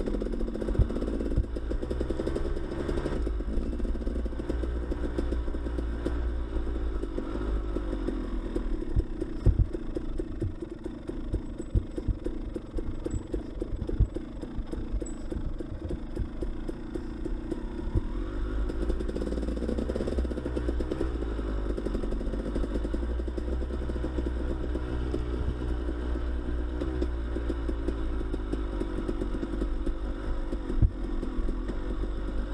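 Enduro dirt bike engine running at low trail speed, easing off about a third of the way in and picking up again later. Scattered knocks and clatter from the bike working over a rough dirt trail.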